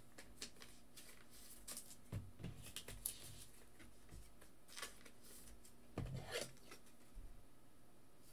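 Faint rustling and clicking of trading cards and foil pack wrappers being handled, with a louder knock and rustle about six seconds in.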